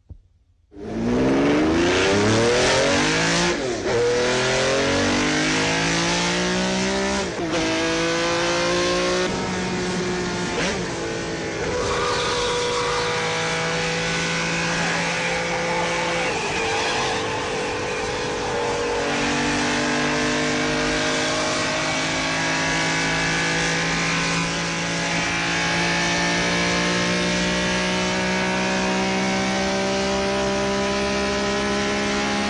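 Ferrari 275 GTB V12 engine driven flat out. It starts about a second in and revs up hard through the gears, the pitch climbing and dropping back at each shift, then runs at high revs at speed.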